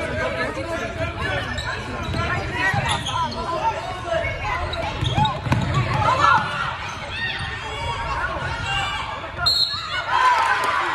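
Basketball bouncing on a hardwood gym court as it is dribbled, under the continuous talk and shouts of spectators in a large gym.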